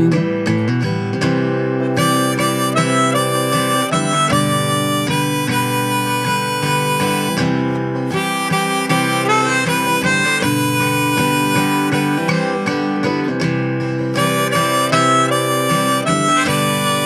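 Hohner harmonica in the key of G playing a melodic solo in phrases over the accompaniment of a Martin D-18 dreadnought acoustic guitar.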